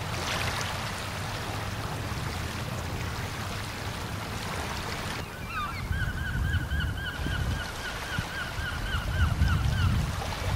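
A steady hiss with a low rumble, like outdoor water ambience. About halfway through, a bird starts calling in a rapid series of short repeated calls, about three or four a second, which carries on to the end.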